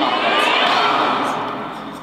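A woman yelling loudly in pain while a police K9 dog bites her, the yell dying away in the last half second.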